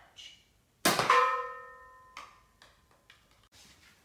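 A sudden loud metallic clang about a second in, ringing on with several bell-like tones that fade over about a second, followed by a few light knocks.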